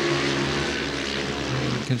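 Speedway motorcycles' 500cc single-cylinder methanol engines running flat out as the riders race round, giving a steady engine note over a low rumble.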